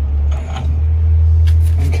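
Faint metal clicks and a scrape as the rear wheel bearing hub assembly of a GM heavy-duty rear axle slides off the axle spindle, over a loud, steady low hum.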